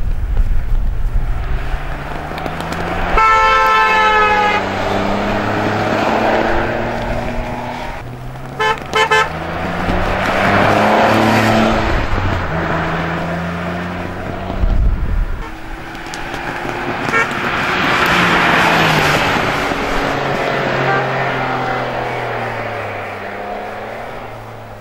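Renault Clio V6 engine running hard through a slalom, its revs rising and falling repeatedly with throttle lifts and gear changes. A horn sounds for over a second about three seconds in, then gives three short blasts around nine seconds.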